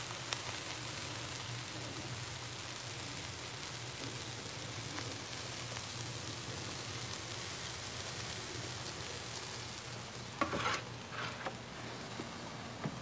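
Chicken pieces and vegetables sizzling steadily on a hot Blackstone flat-top griddle, with a few short clicks near the end.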